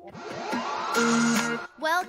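A rising whoosh transition effect: a rushing noise that swells and climbs in pitch for about a second and a half over music, then cuts off suddenly.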